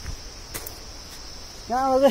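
Insects droning steadily at a high pitch. A man's voice sounds briefly near the end.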